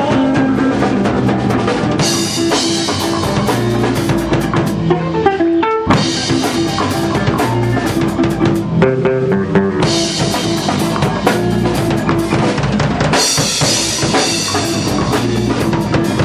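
Rock band playing an instrumental passage in a bluesy funk-rock style: drum kit, electric bass and electric guitar, with no singing. The cymbals come in heavier several times, every few seconds.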